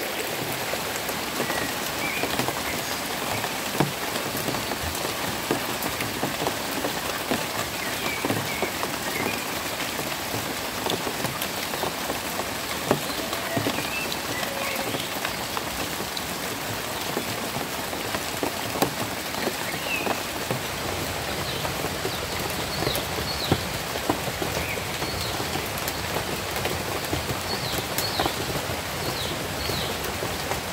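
Steady rain falling on surfaces, with many small sharp drop impacts. Now and then there are a few faint short high chirps, more of them near the end.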